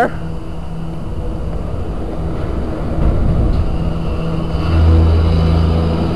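Noisy ambience of a large, busy hall: a steady low hum under a rumbling wash of noise, with a louder low drone setting in about five seconds in.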